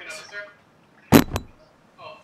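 A Ryobi 18V fogger's plastic body set down on a workbench: a sharp knock about a second in, then a smaller one just after.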